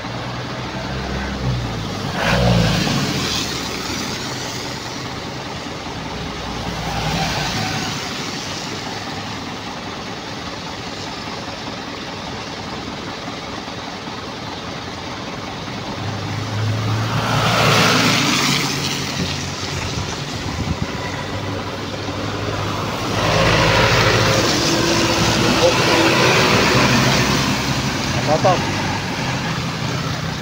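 Truck engines idling in a queue, a steady low hum. Vehicles pass on the wet road several times, each a swelling rush of engine and tyre noise, with the loudest pass about 17 seconds in and a longer one from about 23 to 28 seconds.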